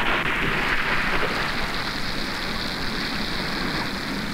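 Rain pouring steadily in a thunderstorm, with a low rumble of thunder underneath, slowly getting quieter.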